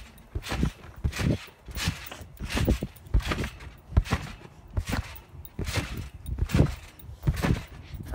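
A person bouncing on a trampoline: the mat thuds once per bounce, in a steady rhythm of about three bounces every two seconds.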